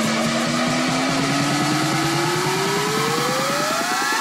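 EDM build-up: a synth riser climbs steadily in pitch over a fast, rapid-fire drum roll, with the bass pulled out, building toward the drop.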